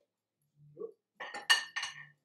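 Crockery clinking: a quick run of sharp, ringing clinks as dishes are knocked together and set down, the loudest about halfway through.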